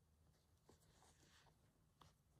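Near silence, with a few faint soft rustles of needle and thread being drawn through cotton fabric during hand stitching.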